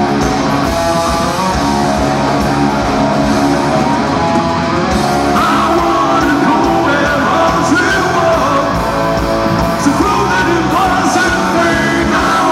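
Rock band playing live: electric guitars and drums, with a man singing lead from about five seconds in.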